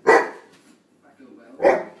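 Dog barking twice, two sharp, loud barks about a second and a half apart.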